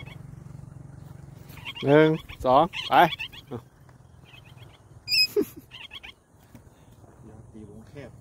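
A parrot's short high-pitched call about five seconds in.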